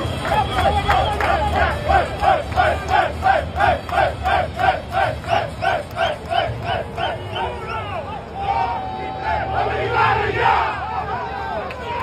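A group of baseball players chanting together in rhythm, about three shouts a second. Near the end the chant gives way to a longer held shout and looser cheering.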